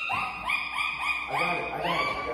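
A woman's short, high-pitched whimpering cries in quick succession, about six in two seconds: distressed, disgusted crying as she holds a bag open for a large snake.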